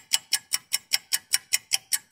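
Clock-ticking sound effect, fast and even at about five ticks a second, marking a time skip.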